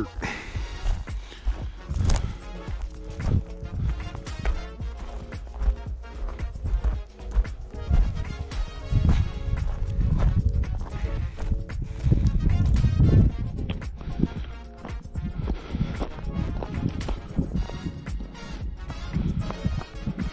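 Footsteps of a person walking over dry, gravelly ground, with crunching and rubbing from the carried camera, under background music.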